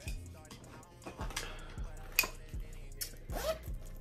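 Morphe Continuous Setting Mist bottle spritzing a fine mist onto the face: short hisses about a second in and again near three seconds, with a sharp click between them.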